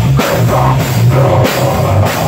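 A heavy rock band playing live and loud: drum kit with cymbals and distorted electric guitar, recorded close up on a small stage.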